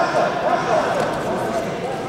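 A man's voice calling out over background chatter in a large hall; the words are not clear.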